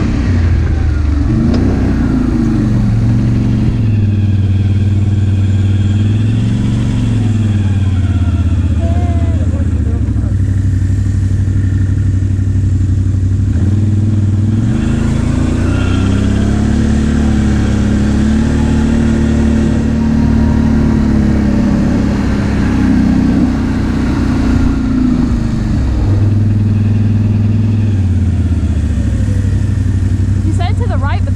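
ATV engine running under the rider as it cruises over sand, its note rising and falling with the throttle several times over a steady drone.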